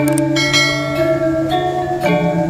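Music: struck, ringing metallic notes that step in pitch over a steady low tone.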